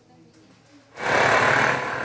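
A quiet, faint murmur, then about a second in a sudden loud rush of outdoor street noise with traffic, which stays on.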